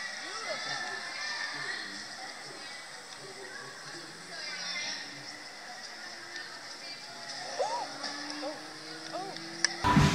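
Faint voices and music in a gym hall, thin and without bass, with a few short high vocal sounds and a held tone in the last few seconds.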